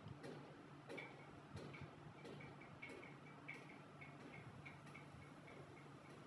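Near silence: faint, regular ticking, about two or three soft ticks a second, over a low steady hum.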